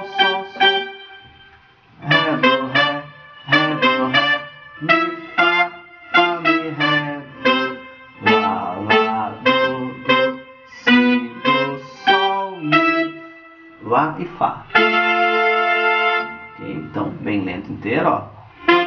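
Synthesizer keyboard playing a brass-section phrase: short, punchy notes and chords in a quick rhythm, with a long held chord about fifteen seconds in before the short notes return.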